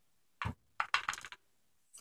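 Small, light clicks of tiny brass lock pins being handled and set against a pinning tray: one click about half a second in, then a quick run of four or five.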